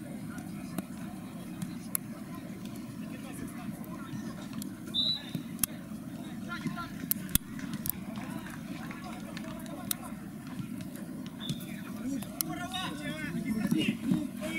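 Sharp knocks of a football being kicked and struck, scattered every second or two, over a steady low background hum, with players shouting near the end.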